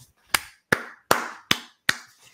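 Five sharp, evenly spaced hits, about two and a half a second, each dying away quickly.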